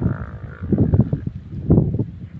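Wind buffeting the microphone in uneven gusts, a low rumble.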